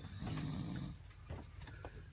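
A sleeping man snoring once, a low snore lasting under a second near the start, followed by a few faint clicks.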